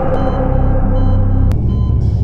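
A loud, steady low rumbling drone with faint held higher tones, and a sharp click about a second and a half in.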